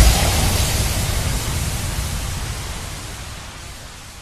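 A synthesized white-noise wash from an electro house dance remix, left ringing out after the beat stops and fading steadily away.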